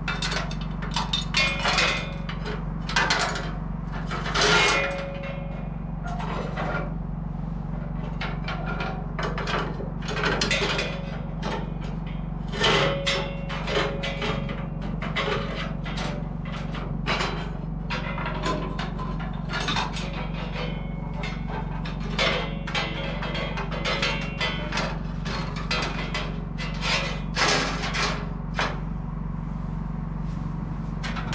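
Irregular metal clicks, clanks and rattles as a bandsaw blade is handled around the open blade wheels of a Wood-Mizer LT40 sawmill during a blade change, some knocks ringing briefly, over a steady low hum.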